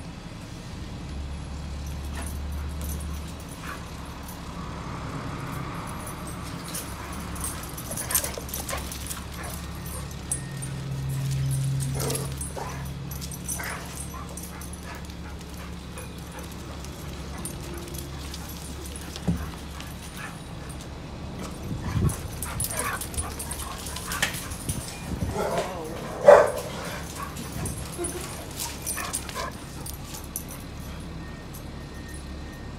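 Two dogs playing, with short barks now and then, mostly in the second half; the loudest bark comes a few seconds before the end.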